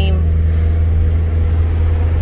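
Steady low drone of a car driving, heard from inside the cabin: engine and road noise, with a faint steady hum above it.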